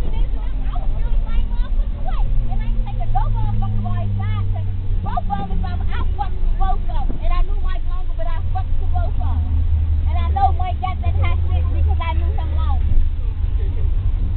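Inside a moving school bus: a loud, steady low engine drone whose pitch slides slowly up and down, with passengers' voices talking over it.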